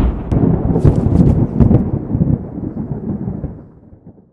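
Cinematic boom sound effect for a logo sting: a deep, crackling rumble with a few sharp cracks in the first two seconds, fading away near the end.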